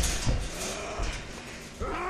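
Hand-to-hand fight sound effects from a film soundtrack: a dull hit near the start and a smaller thud about a second in, over a low rumble, then a wavering, strained groan from a man begins near the end.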